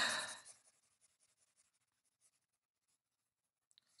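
Near silence after a man's spoken word trails off in the first half second.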